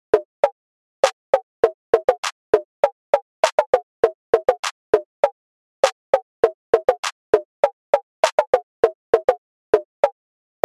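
Hip-hop instrumental down to a bare melody of short, clipped plucky notes, a few a second in an uneven rhythm, with no drums or bass.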